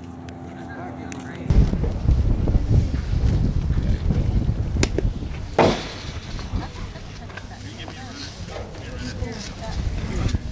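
Wind buffeting the camera microphone as a heavy low rumble, starting abruptly about a second and a half in. A sharp knock, with a fainter one just before it, comes a little past the middle.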